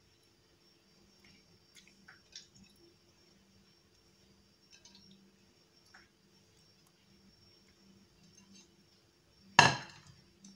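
Faint, soft handling taps as raw hake fillets are laid onto the vegetables in a glass baking dish, then one sharp clink near the end as a plate is set down on the counter.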